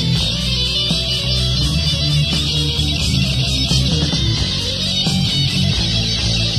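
Amateur rock band playing an instrumental passage of electric guitar over bass guitar, recorded in a garage on a Tascam four-track with a single microphone in the middle of the room.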